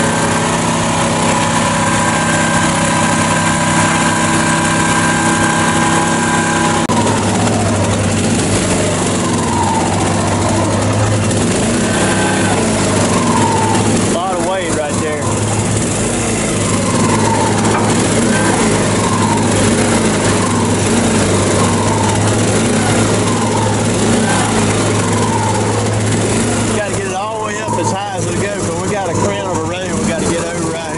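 The lowboy trailer's onboard engine runs steadily, then at about seven seconds comes under load driving the hydraulic pump to lift the loaded trailer. Its note drops heavier and wavers, a little more than once a second. It is straining to pick up the load, which the owner puts down to an engine and hydraulic pump too small for the heavy machines it hauls.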